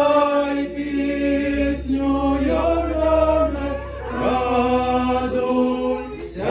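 Several voices singing a church chant together, holding long notes, with a new phrase beginning about every two seconds.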